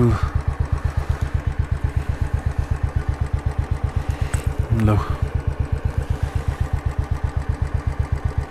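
Motorcycle engine idling, a steady even chugging at about eight beats a second.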